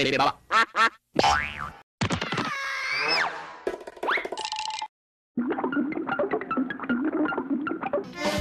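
Cartoon logo sound effects and jingle music: a springy boing and several rising whistle glides in a run of zany effects, a short break a little before halfway, then a few seconds of busy music.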